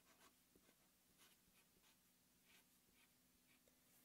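Near silence, with faint short strokes of a felt-tip marker writing on paper, over a low steady hum.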